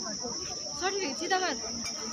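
Insects giving a steady, high-pitched drone that never varies, with faint voices briefly over it about a second in.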